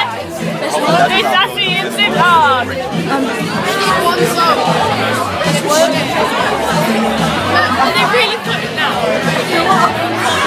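Crowd of concert-goers chattering and shouting, many voices overlapping, over music with a steady beat from the venue's sound system.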